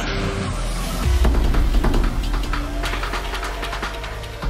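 Tense thriller background score: a low rumbling drone that swells about a second in, with held notes and scattered sharp hits.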